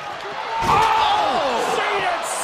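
A wrestler slammed down in the ring with a heavy thud about half a second in, followed by a long, falling shouted "ohh" from a commentator.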